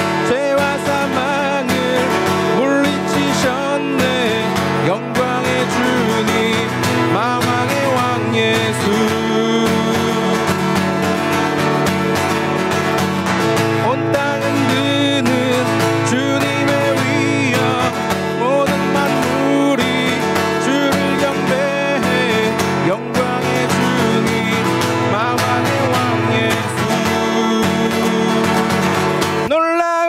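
A man singing a worship song, accompanied by his acoustic guitar.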